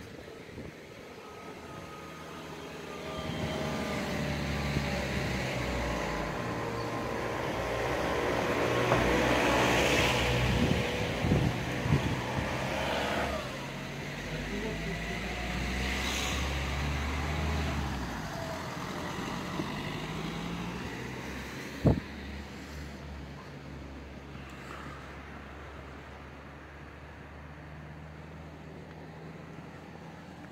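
A car driving past on the street. Its engine and tyre noise build to the loudest point about ten seconds in, and the engine pitch drops as it goes by. A lower engine rumble follows for a few seconds, and a brief sharp sound comes about two-thirds of the way through.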